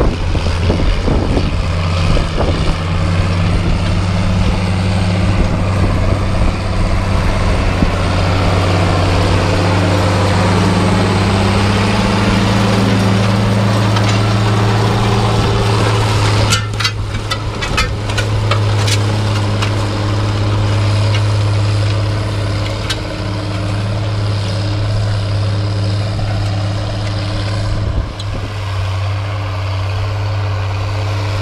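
International Harvester 2+2 tractor's diesel engine running steadily under load as it pulls a tillage implement through the soil. A run of sharp clicks comes as it passes close, about halfway through.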